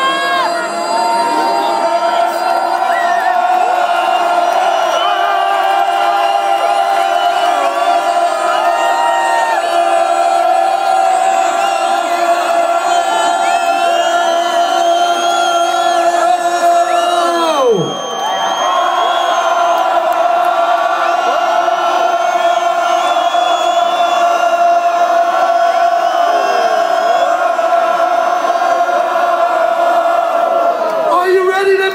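Concert crowd cheering and whooping throughout, over a held steady tone from the stage. About eighteen seconds in, the tone dives sharply in pitch and comes straight back.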